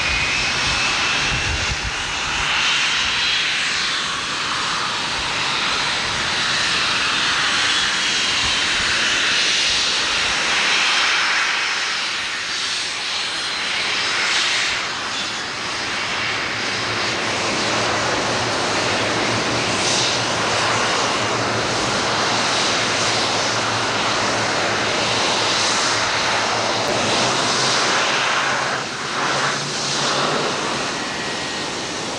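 Lockheed L-1011-500 TriStar's three Rolls-Royce RB211 turbofans running at taxi power as the jet rolls past close by: a steady loud jet roar with a high-pitched whine on top that rises in pitch in the first few seconds.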